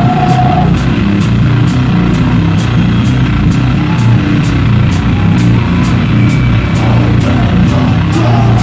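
Live band playing loud heavy rock: distorted electric guitars over a drum kit, with a cymbal struck about twice a second.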